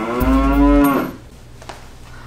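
A cow mooing sound effect: one long moo of about a second, with a deep rumble under its middle.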